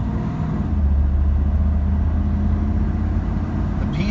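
1997 Chevrolet Camaro Z/28's LT1 V8 running at about 2,000 rpm as the car gathers speed, heard from inside the cabin as a steady low drone.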